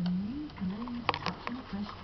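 A person's low voice speaking softly, too indistinct for words, with a few sharp clicks about a second in.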